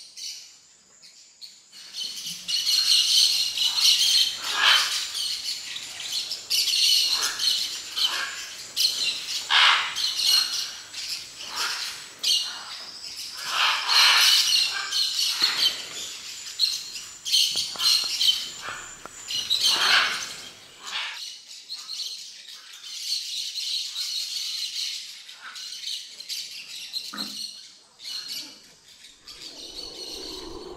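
A large mixed flock of parakeets and parrots calling together at a clay lick: dense, high chattering that swells and ebbs for about twenty seconds, then thins to scattered calls.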